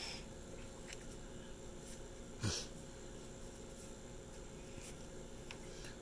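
Faint handling of a velvet drawstring pouch and the small book taken out of it, with one short click about two and a half seconds in, over a steady low hum.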